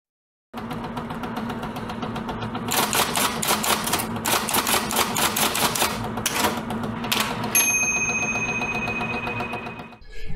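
Rapid mechanical clatter like fast typing, over a steady hum. It ends a little past the halfway point with a single bell-like ding that rings out.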